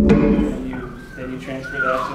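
A sharp knock at the start, then a man scat-singing a short rhythmic phrase, his voice gliding up and down in pitch.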